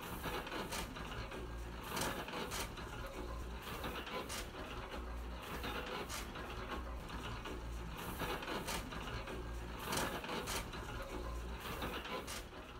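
Letterpress printing press running, a steady mechanical clatter with clicks, repeating about every two seconds.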